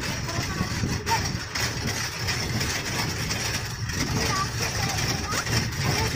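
Steady low rumble and road noise of a vehicle moving along a dirt forest track, heard from on board.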